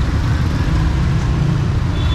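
Auto-rickshaw engine running steadily with a low rumble, heard from inside the open passenger cab as it drives through street traffic.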